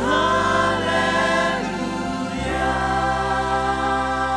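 A choir of children and adults singing a Swahili gospel hallelujah song over instrumental backing, holding long notes, with a change of chord about two and a half seconds in.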